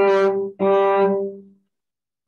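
Cello heard over a video call: a note reached by a slide down the string, held briefly, then the same note bowed again for about a second and fading away, the exercise's slide coming to rest on its target note.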